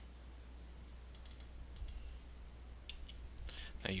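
A few faint, scattered computer mouse clicks over a steady low hum; a man's voice begins right at the end.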